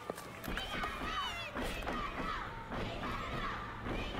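Faint background voices under a low steady hum, with a light click of handling just at the start.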